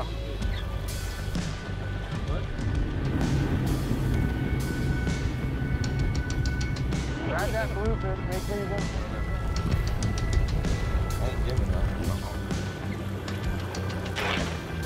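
Background music over the steady drone of a boat's triple Mercury Verado outboard engines and rushing water as the boat runs at speed.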